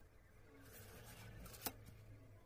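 Faint scratching of a colouring pencil drawing on card, with a single sharp click a little past the middle.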